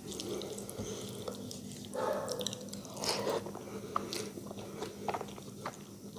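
Close-miked wet eating sounds: sticky clicks and squelches as fingers mash rice into curry gravy on a steel plate, mixed with mouth clicks from chewing.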